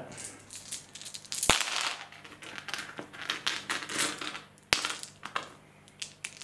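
A large handful of six-sided dice rattling in the hand and clattering onto a tabletop gaming mat, with a few sharp knocks among the clicking, the loudest about a second and a half in and again near five seconds.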